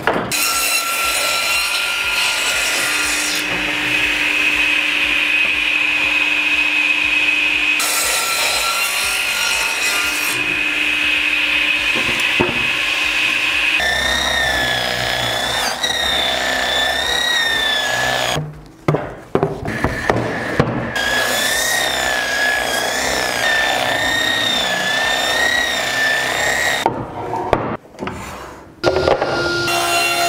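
A pendulum crosscut saw running and making two long crosscuts through spruce construction planks. From about halfway, a handheld rotary brushing machine with dust extraction scours a plank, its whine wavering up and down with the pressure, with a couple of short breaks.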